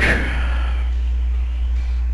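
Steady low electrical hum in the recording, with a brief rustle of handling noise at the start as the camera is moved.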